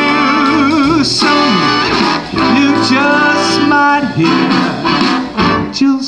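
Live jazz big band playing a swing arrangement, with saxophones, trombones and trumpets, and a male vocalist singing over it. He holds a wavering vibrato note near the start.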